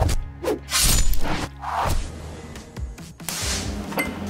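Background music over a few short, sharp crackling bursts: small pull tabs being spot-welded onto a bare steel body panel for a dent-pulling repair.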